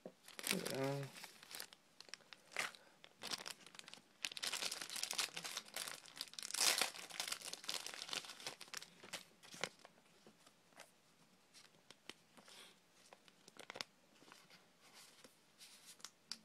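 Plastic card sleeves rustling and crinkling as a trading card is fetched and slid into a sleeve. The rustles come and go, busiest in the first ten seconds, then thin out to a few light ticks.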